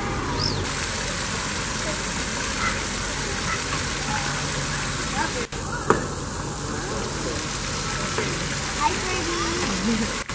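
Steady hissing outdoor background with faint, distant people's voices. The sound breaks off for a moment about halfway through.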